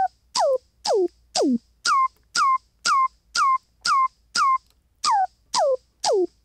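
Hi-hat pattern processed through the Rhino Kick Machine plugin, about two hits a second, each a short hiss followed by a quick downward-swooping electronic tone. Near the start and again near the end the tone dives much lower as the plugin's automated frequency changes pitch. The sound is really really dry.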